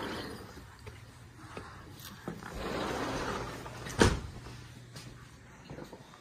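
A door shutting with one sharp knock about four seconds in, after stretches of soft rustling and handling noise.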